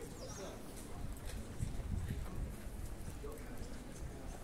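Footsteps of a person walking on brick paving, a series of low thuds loudest in the middle, with indistinct voices of passers-by in the background.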